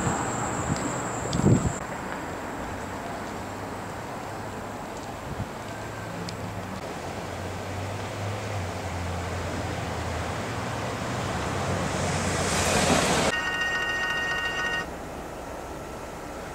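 Steady road and engine noise of a car driving slowly through city streets, heard from inside the car. A rushing noise swells near the end and cuts off suddenly, followed by a brief steady high tone.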